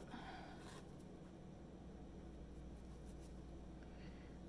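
Near silence: room tone with a steady low hum and a faint rustle in the first second.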